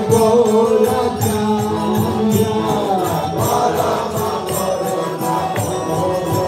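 Devotional kirtan: voices chanting a mantra together over a steady beat of small hand cymbals.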